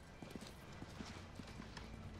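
Faint footfalls on a hard surface, an irregular run of short knocks several times a second, from the TV episode's soundtrack.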